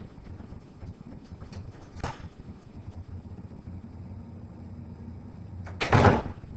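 Steady low room rumble with a short knock about two seconds in and a louder pair of knocks near the end.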